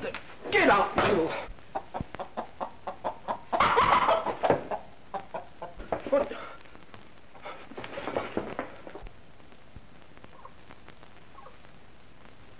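A hen clucking and squawking: loud squawks at the start and again about four seconds in, short sharp clucks in between, then quieter clucking that dies away after about nine seconds.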